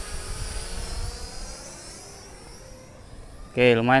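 Visuo Zen Mini GPS drone's propellers whining as it flies fast at its speed-2 setting into the wind, several high tones bending in pitch and fading as it moves away. Wind rumbles on the microphone underneath.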